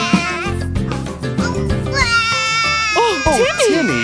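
Children's cartoon song: music with a sung line, then a high, child-like cartoon voice crying in wavering wails over the music in the last second or so.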